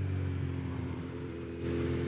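Kawasaki Z900RS inline-four engine running steadily at cruising speed, with some wind noise; it gets slightly louder about a second and a half in.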